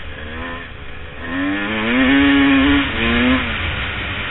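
Dirt bike engine revving up and down as the bike is ridden along a dirt trail. There are short rises near the start, one long, louder pull in the middle and a brief blip just after. A low rumble of wind on the microphone runs underneath.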